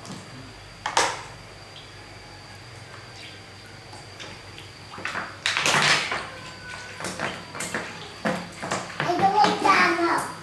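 Cooking oil poured from a large plastic jug into a wok, splashing loudest about halfway through, then going on in smaller irregular spatters and ticks. A sharp knock comes about a second in.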